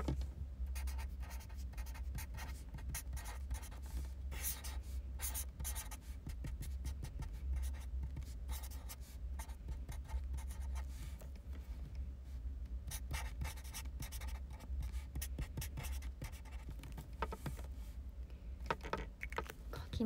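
A pen scratching on paper in many short, irregular strokes as someone writes or draws, over a low steady hum. The pens are ones she finds hard to write with.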